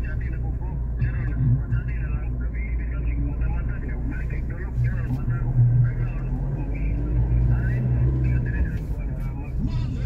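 Steady low drone of a car's engine and tyres heard from inside the cabin while driving, with muffled voices over it.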